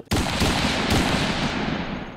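Title-card sound effect: a sudden explosion-like hit of noise with a low rumble that starts abruptly and then fades away slowly.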